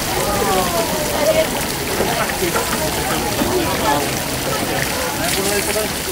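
Indistinct voices of several people talking, too unclear to make out, over a steady background hiss.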